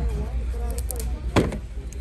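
One sharp click about one and a half seconds in, over a low steady hum, with faint voices in the background.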